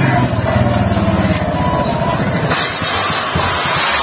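Hero Honda motorcycle's single-cylinder engine running as the bike rides up close, a rapid low pulsing exhaust note that thins out about halfway through while a hiss grows. A faint thin tone, likely background music, runs over it.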